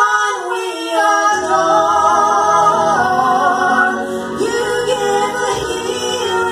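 Two women singing a gospel hymn as a duet into microphones, holding long notes with vibrato.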